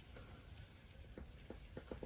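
Near silence: room tone, with a few faint soft ticks in the second half.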